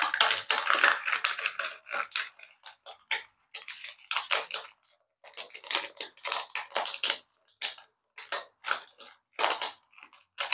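Hard plastic parts scraping, rubbing and creaking against each other as a solar flapping-flower toy is pushed into its thin plastic outer skin, in many short irregular bursts with brief pauses between.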